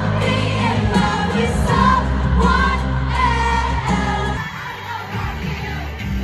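Live pop music with a singer at a stadium concert, heard through a phone's microphone. The sound changes abruptly about four and a half seconds in, where one recording cuts to the next.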